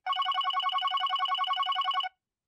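Electronic telephone ringtone: a rapid warbling trill of several pitched tones at about ten pulses a second, cutting off abruptly at the end.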